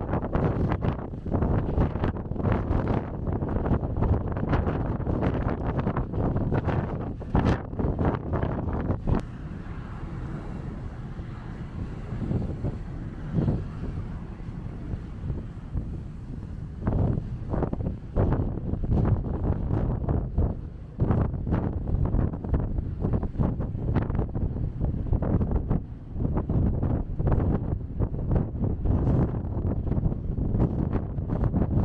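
Wind buffeting the microphone in repeated gusts on a moving ferry's open deck. It eases for several seconds about a third of the way in, then gusts again.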